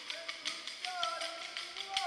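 Wooden Kolkali sticks clacking together in a quick, steady rhythm of several strikes a second, over a group singing the Kolkali song in long, gliding notes.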